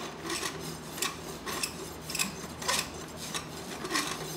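Farrier's hoof rasp filing across a freshly shod horse's hoof in about seven even scratchy strokes, a little under two a second. This is the finishing stage, rasping the clinched nail ends flush with the hoof wall.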